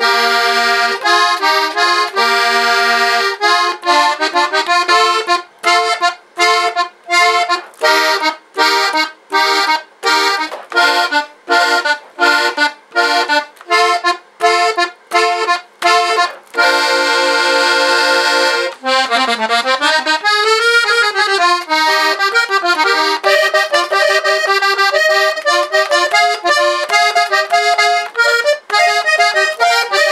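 Hohner Corona II diatonic button accordion played solo in the key of F, its reeds in traditional factory-style tremolo tuning with the tremolo and brightness eased slightly. It plays a series of short detached chords with gaps between them, then one long held chord about two-thirds of the way in, then a flowing melody.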